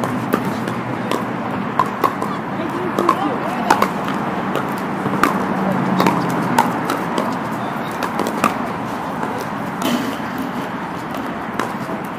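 Pickleball paddles hitting the hollow plastic ball, sharp irregular pops coming from this court and several neighbouring courts, over a steady background of players' voices.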